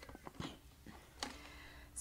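Faint handling knocks and rustle as a violin and bow are lifted up to the shoulder, with a quiet room between them.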